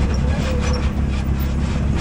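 Can-Am Maverick X3 Turbo RR side-by-side's turbocharged three-cylinder engine running steadily at low speed as it crawls over slickrock, heard from inside the open cab.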